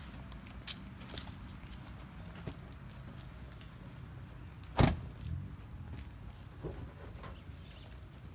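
A single sharp, heavy thump from the hearse about five seconds in as a casket is slid out of its rear bay, over a steady low hum and a few light knocks.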